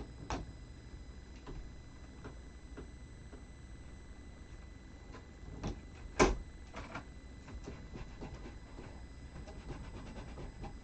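Light clicks and taps of hands working a Stamparatus stamping platform while re-stamping, with one sharp knock about six seconds in, the loudest sound.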